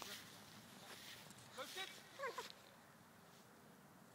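Faint distant voices calling out, with two short shouts about two seconds in.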